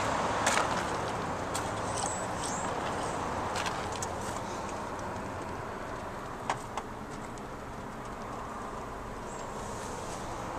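A 2005 Toyota Corolla S engine idling, heard from inside the cabin as a steady, even rush, with a few short clicks about half a second in, near the middle and twice about six and a half seconds in.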